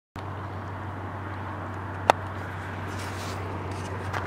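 Steady noise of trucks on the road, with a low steady hum underneath and one short sharp click about two seconds in.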